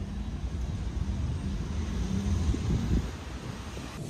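Low rumble of outdoor city street noise: traffic with some wind on the microphone, swelling a little between two and three seconds in.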